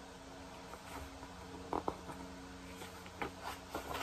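A few soft rustles and taps from handling a paper picture book, with a page being turned near the end, over a faint steady hum.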